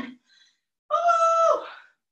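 A woman's voice calling out once, held at a steady pitch for about a second: the drawn-out last call of a workout countdown.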